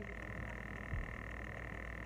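Steady high-pitched background drone over a low hum, with a soft knock about halfway through.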